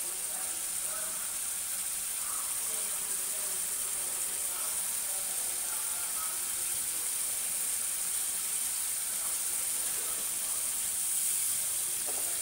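A spice paste of onion, ginger and garlic with ground spices sizzling steadily in oil in a non-stick pan, with a metal spatula stirring it now and then. The paste is being fried down until it is well cooked.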